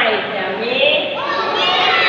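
A group of young children chanting a rhyme together in a singsong, their voices sliding down and then rising again about a second in.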